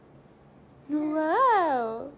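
A quiet start, then about a second in a single drawn-out vocal sound without words, its pitch rising and then falling.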